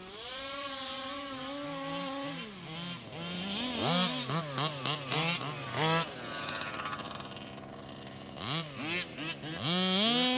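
Small two-stroke petrol engine of a 1/5-scale RC buggy revving: held high at first, dropping back, then a run of quick rising and falling throttle blips about four seconds in and again near the end.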